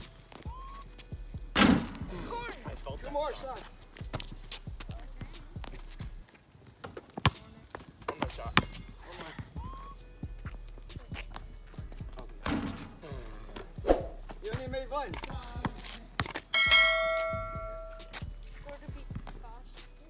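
Basketball thuds, a string of separate knocks as the ball is shot, bounces on the ground and hits the hoop. Near the end there is a ringing tone with many overtones that lasts about a second and a half.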